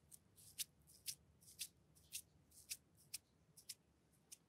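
Fingertips pressing and pulling apart a dab of foamy cream cosmetic close to the microphone, making sharp, sticky, high-pitched crackles about twice a second.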